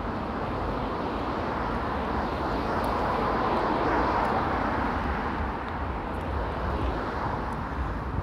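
Passing vehicle heard as a broad rushing rumble that swells to its loudest about halfway and then fades.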